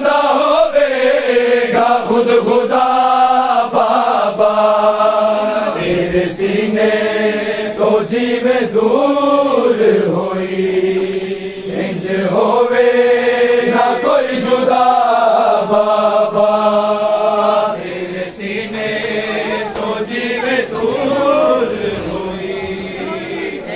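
A group of men chanting a Punjabi noha, a Shia mourning lament, in long held lines that rise and fall.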